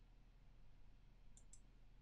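Near silence with a faint low hum, broken by two quick, faint clicks about one and a half seconds in.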